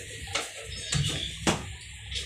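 Two sharp clicks about a second apart, the second louder, over a low steady hum.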